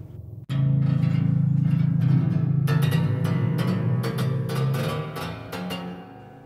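Eerie, horror-like cinematic sound from a sampled 1879 Guild & Sons square grand piano: a sustained low string drone comes in about half a second in. Partway through it is joined by a rapid, uneven flurry of plucked string strikes.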